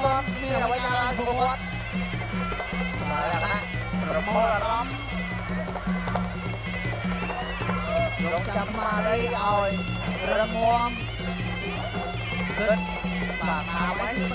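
Traditional Kun Khmer ringside fight music: a wavering, bending reed-oboe melody over a steady, evenly repeating drum beat.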